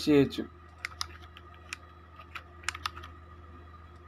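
Clicks from a computer keyboard and mouse: about ten light, separate clicks at an uneven pace, over a faint steady hum.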